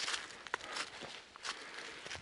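Footsteps in dry fallen beech leaves on a forest path, with a brief high squeak about half a second in.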